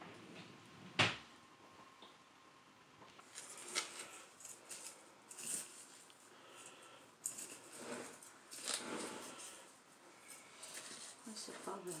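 Kitchen knife digging and scraping into potting soil mixed with vermiculite, in short irregular gritty strokes, with a sharp click about a second in.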